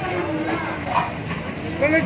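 A dog giving short high-pitched cries, loudest near the end, over people talking.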